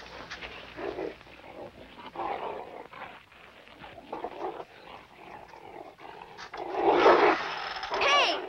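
A dog making rough vocal sounds in irregular bursts, with the loudest and longest burst near the end.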